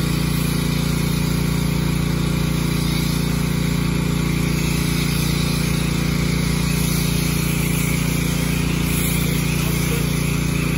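Pressure washer motor running steadily with a constant low hum, and water spray hissing over it.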